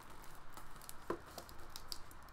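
Handling noise from a cardboard CD and DVD box-set book being moved and lowered: a scatter of small taps and light rustles.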